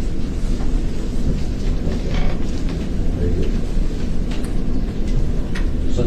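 Steady low rumbling noise with a few faint ticks and taps.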